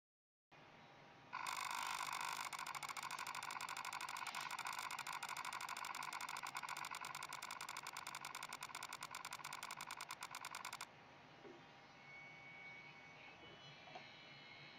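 Planmeca Emerald intraoral scanning system running during a buccal bite scan: a loud, rapid, even buzz of fast clicks. It starts about a second in and cuts off abruptly about three seconds before the end, when the capture stops.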